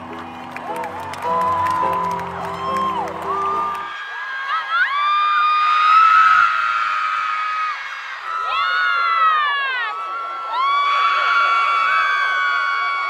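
For about the first four seconds, concert music with a deep bass line plays under crowd noise. Then a large arena crowd screams in long, high-pitched shrieks that slide down around nine seconds and swell again a second or so later.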